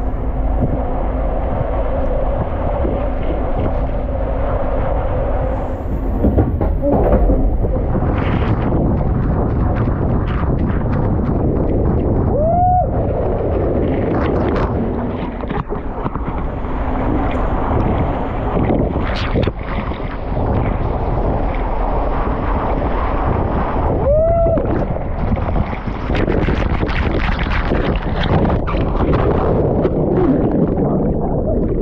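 Water rushing and splashing around a rider sliding down an enclosed water-slide tube, with wind buffeting the microphone. Two short squeaks rise and fall, about halfway through and again later.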